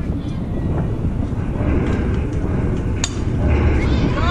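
Wind rumbling on the microphone at an outdoor softball field. Faint shouts from spectators come in from about halfway, and one sharp crack of softball play sounds about three seconds in.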